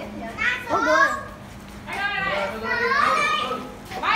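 Children's voices talking and calling out excitedly in two short stretches, over a faint steady low hum.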